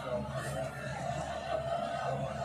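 Basketball TV broadcast audio playing back: a commentator talking over arena crowd noise.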